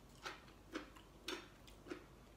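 Faint crunching of crisp pork crackling being chewed, about two crunches a second.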